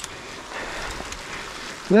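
Rain falling steadily on leaves and brush, a soft even hiss; a man's voice begins near the end.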